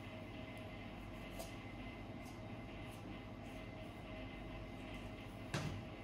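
A knife working through a raw chicken's leg joint, heard as a few faint soft clicks over a steady hum of kitchen equipment, with one louder knock about five and a half seconds in.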